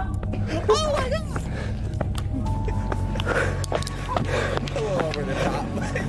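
Background music with a steady low drone under a man's alarmed voice; a high cry about a second in.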